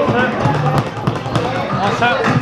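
Indistinct voices over background music, with some dull thuds.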